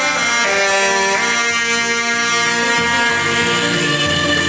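Saxophones playing a slow melody together in long held notes.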